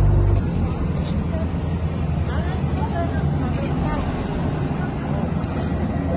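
Diesel engine of road-paving machinery running steadily, a low rumble, with faint voices in the background.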